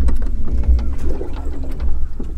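Low, gusting rumble of wind buffeting the microphone over open water, with scattered faint clicks.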